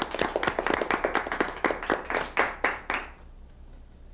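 Applause: hands clapping, the separate claps distinct, dying away about three seconds in.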